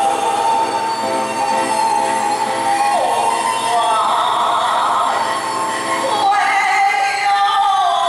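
Taiwanese opera (gezaixi) music: a sung line of long held notes that slide between pitches, over the instrumental accompaniment.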